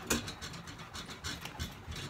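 Whiteboard eraser wiping marker off the board in quick back-and-forth strokes, each stroke a short rubbing swish.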